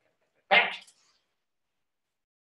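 A dog gives a single short bark about half a second in.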